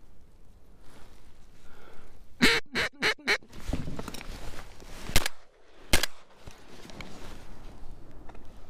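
A quick run of five duck quacks, then two shotgun shots a little under a second apart, the first shot the loudest sound.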